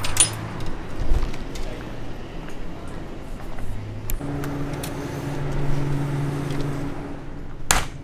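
A glass shop door clunking at the start, then footsteps and camera handling over store room tone, with a steady low electrical hum from about four seconds in. A sharp click comes near the end.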